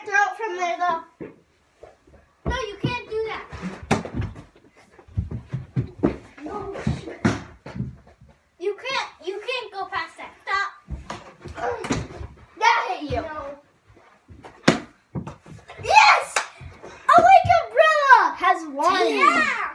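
Children shouting and squealing during an indoor dodgeball game, with a ball hitting and bouncing off the floor and walls in a handful of sharp knocks.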